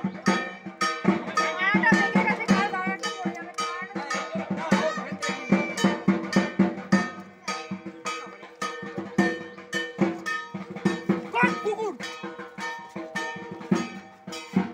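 Rhythmic drum-and-bell music, a quick even beat of about three strokes a second with metallic clanging over it, and voices calling out over the music.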